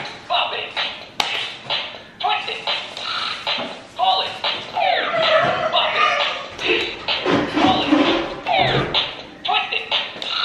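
Handheld Bop It electronic game in play, its small speaker giving quick electronic sound effects and voice cues, with sliding tones about halfway through and again near the end. People's voices are mixed in.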